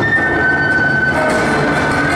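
Accompaniment music for a synchronized swimming routine, dense and loud, with one long high note held and sliding slightly downward.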